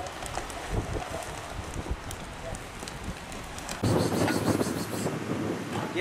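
Wind rumbling on the microphone, with scattered low thumps. It gets abruptly louder and fuller about four seconds in.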